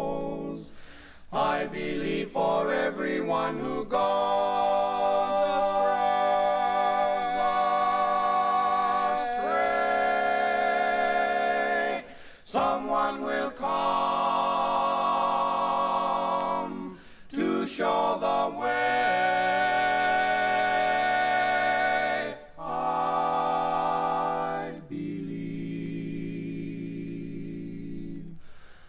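Male barbershop quartet singing a cappella in close four-part harmony, with long held chords and several short breaks between phrases; the last chord is quieter.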